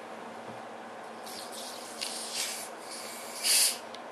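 Screw cap of a plastic bottle of bottle-carbonated water kefir being loosened, letting the built-up gas escape in a few short hisses, the loudest near the end.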